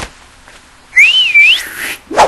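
A single whistled note about a second in, lasting about half a second: it rises, dips and climbs higher again, like a cartoon sound effect. A short click comes at the very start.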